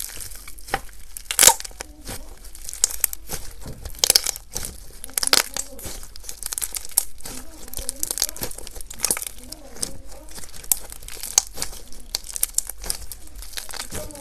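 Jelly cube slime, chunks of red and green jelly cubes bound in clear slime, squeezed and pulled apart by hand, giving an irregular run of crackles, snaps and sticky pops.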